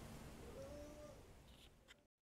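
Near silence: faint room tone with a faint wavering tone a little after the start, then a short click near the end as the sound cuts off to total silence.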